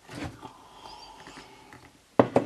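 A person sipping and swallowing a drink from a mug: a short sound just after the start, then faint throat and swallowing noises.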